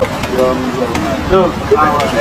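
Unclear voices talking and vocalising over the steady rumble of city street traffic.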